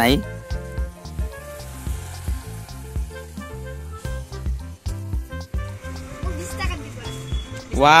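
Chunks of marinated chicken sizzling on a wire grill over charcoal, a faint steady hiss, with background music playing.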